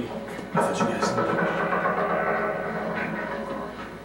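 Horror-film soundtrack playing on the television: a sudden onset about half a second in, then a sustained ringing tone with many steady overtones that slowly fades.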